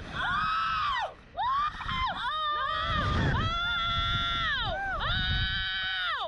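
Two women screaming on a SlingShot reverse-bungee ride: a string of long, wavering screams with short breaks between them, over a low rumble.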